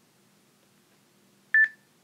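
Near silence, then about one and a half seconds in a single short, high electronic beep from the interval timer, signalling the start of the timed interval.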